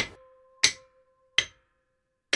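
Two sharp hammer knocks used as a sound effect, a little under a second apart, over a faint steady tone.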